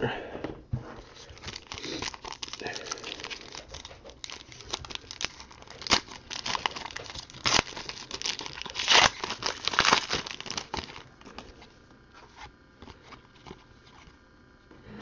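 Foil trading-card pack wrapper being torn open and crinkled by hand, an irregular crackling that is loudest about six to ten seconds in and dies away to faint handling clicks near the end.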